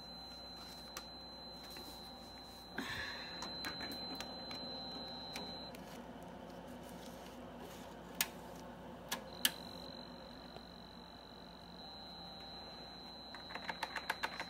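Compaq Deskpro 286 running with a steady fan and power-supply hum and a thin high tone. A few sharp clicks come just past the middle as the 5.25-inch floppy drive's door is worked with a disk inside, and a quick run of keyboard key clicks comes near the end.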